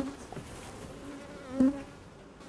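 A honey bee buzzing in flight right around the microphone, defensive and trying to sting. The buzz swells loud as it passes close at the start and again about one and a half seconds in.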